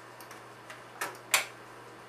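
Clicks from working a desktop computer's keyboard and mouse: a few faint taps, then two sharper clicks about a third of a second apart, the second the loudest.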